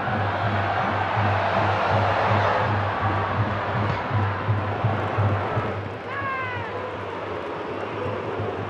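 Football stadium crowd noise over a steady low drum beat, about three beats a second. The crowd swells over the first few seconds as the attack reaches the goal, then eases. About six seconds in there is a short falling whistle-like call.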